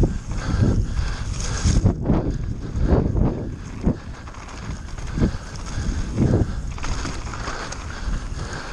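Giant Reign full-suspension mountain bike descending a rough dirt trail: tyres rumbling over dirt and rocks, with wind on the microphone and a run of heavier thumps, about one a second, as the bike hits bumps.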